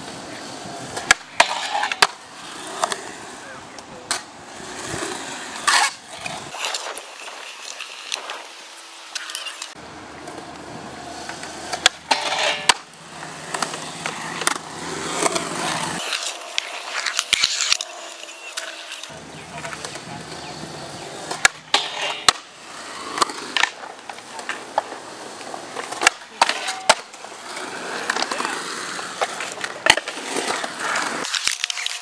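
Skateboard wheels rolling on concrete, with many sharp clacks of the board striking the ground, scattered irregularly.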